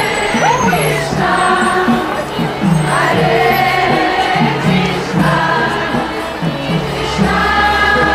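Kirtan: a group of devotees singing a devotional chant together with instrumental accompaniment, over a steady repeating low pulse.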